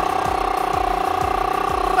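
Background music: a single held note over a steady beat.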